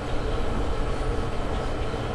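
Steady, even background noise with a low rumble and no distinct events.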